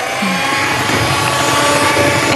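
Electric hand mixer running at a steady speed, its beaters whirring through creamed cookie batter in a glass bowl.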